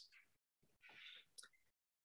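Near silence, with a faint brief sound about a second in.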